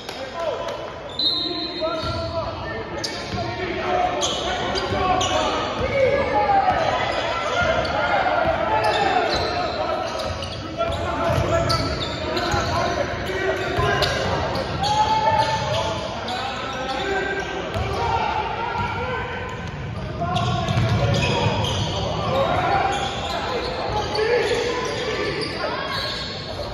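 Basketball game on an indoor hardwood court: the ball bouncing repeatedly as it is dribbled, with many voices calling and shouting, all echoing in a large gym.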